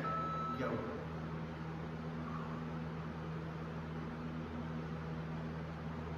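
Steady low machine hum with a faint hiss under it, the running background of the room.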